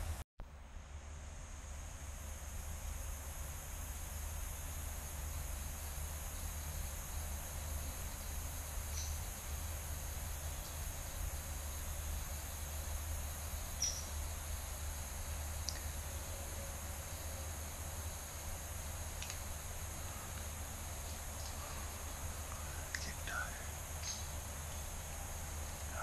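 Quiet woodland ambience: a steady hiss over a low rumble, with a faint high hum throughout and a few faint, short high chirps scattered across it.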